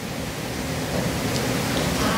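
Steady hiss of background noise, growing slightly louder.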